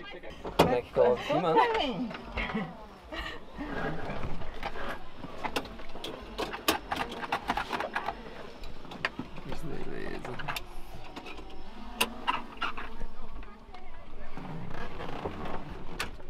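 People talking in a small helicopter cabin, with many scattered sharp clicks and knocks from seatbelts and cabin fittings as passengers settle in.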